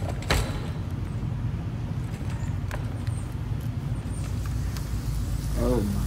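A steady low rumble with scattered faint clicks and crackles above it, from the music video's soundtrack ambience between verses. A man's voice says 'Oh' near the end.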